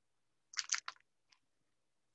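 A few quick crinkles of plastic snack-bag packaging being handled, about half a second in, then one faint tick.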